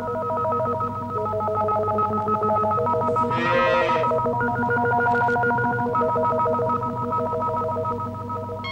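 Electronic tones stepping between a few pitches over a steady low drone, like a ringing telephone, on a film soundtrack. About three and a half seconds in comes a short sliding, voice-like cry.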